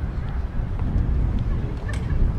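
City street sound dominated by a loud, uneven low rumble of wind and traffic, with faint wavering voices or calls and one sharp click near the end.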